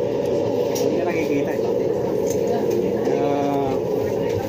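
Restaurant room noise: a steady hum with faint background voices and a few light clicks, and a drawn-out human voice sound in the last second.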